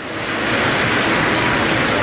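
SpaceX Falcon 9 rocket lifting off, its nine first-stage Merlin engines giving a loud, steady rushing noise that swells over the first half second.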